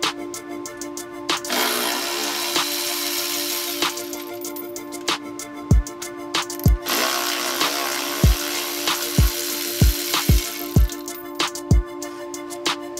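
A power tool runs in two spells, a couple of seconds from about a second and a half in, then longer from about seven seconds in, as it spins motor-mount nuts off a BMW's front subframe. This sits under background hip-hop music with a steady tone and deep falling bass kicks.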